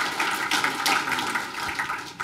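Audience applauding, the clapping starting to fade near the end.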